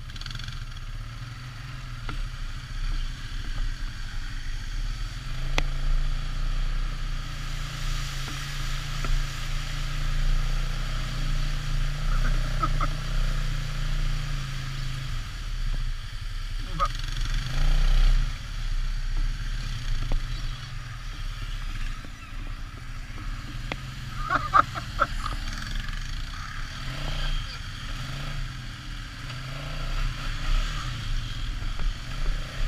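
ATV (quad) engine running steadily as it rides along a rough dirt trail, a low drone throughout, with a few brief higher-pitched sounds midway and again about three-quarters of the way through.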